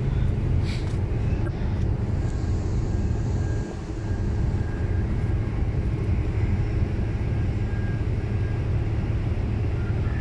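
Steady low diesel drone of ship engines running at the pier, with a brief dip just before the middle.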